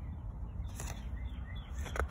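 Faint birds chirping in short, scattered calls over a steady low outdoor rumble, with a soft paper rustle near the middle and another at the end as a book page is handled and turned.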